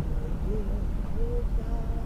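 Steady low rumble of road and engine noise inside a moving car's cabin at about 42 mph, with a few faint short wavering tones over it.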